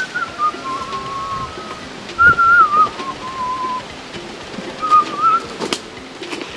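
A person whistling a slow tune in drawn-out notes, some held nearly steady and some wavering, in three short phrases with gaps between them.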